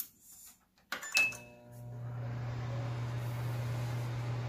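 Microwave oven started from its push-button panel: a click, then a short high beep about a second in. The oven then starts running with a steady low hum that holds to the end.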